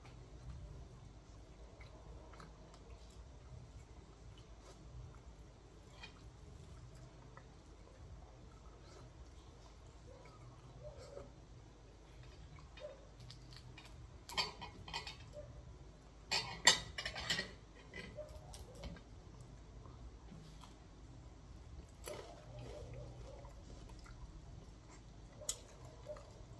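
Eating at a table: a fork and fingers clinking and scraping on a ceramic plate, in a few short clusters of clicks midway and near the end, with faint chewing between them.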